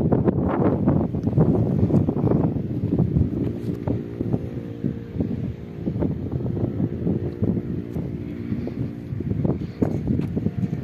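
Wind buffeting the microphone in irregular gusts. As the gusts ease about three and a half seconds in, a steady engine-like hum shows through underneath, fading again near the end.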